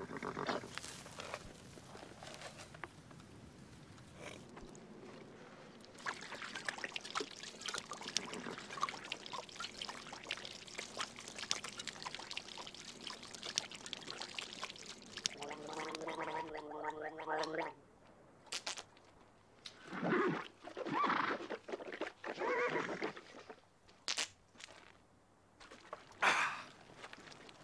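Water glugging and splashing as it is drunk from a leather canteen, with many small gurgles and clicks. Near the middle comes one long voiced sound, and later a few short voiced grunts or breaths.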